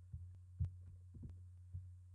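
Faint steady low electrical hum on the recording, with a few scattered soft thumps and short clicks, the sharpest about half a second in.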